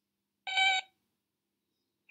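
A cartoon robot speaking in one short electronic beep, a buzzy tone with several pitches stacked together, about half a second in.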